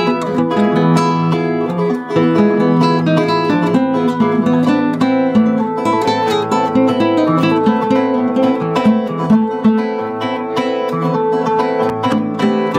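Two nylon-string classical guitars playing a duet: a continuous run of plucked notes, a melody over low bass notes.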